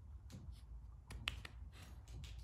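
A few short, soft clicks over a low steady hum, the loudest cluster a little past the middle.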